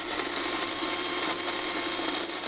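Electric hand mixer running steadily, a motor whir with a low hum underneath.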